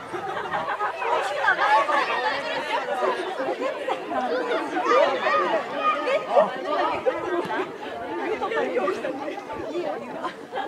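Many voices talking and calling over one another in overlapping chatter, with no single voice standing out.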